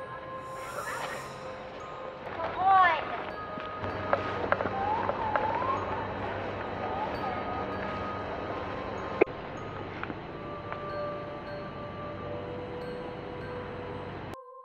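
Eerie background score of scattered chime-like bell notes over a steady hum, with a short gliding voice-like sound about three seconds in and a sharp click a little after nine seconds.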